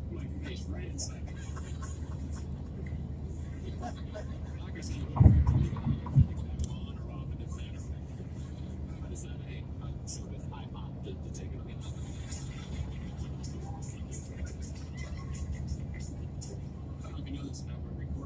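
Car road noise at highway speed heard inside the cabin: a steady low rumble of tyres and engine. A few heavy thumps come about five to six seconds in.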